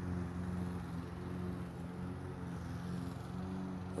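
A steady low hum of an engine or motor running evenly, holding the same pitch throughout.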